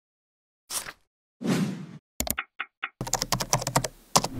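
Computer keyboard typing: a few separate keystrokes and a heavier thump about one and a half seconds in, then a quick run of clicks through the last second.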